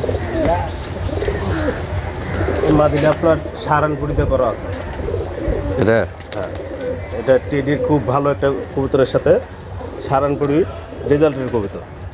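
Domestic pigeons cooing, low coos repeating every second or two.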